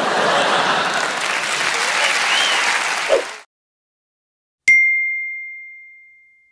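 Audience applauding at the end of a stand-up set, cut off abruptly after about three and a half seconds. After a second of silence, a single bright electronic chime rings out and fades slowly.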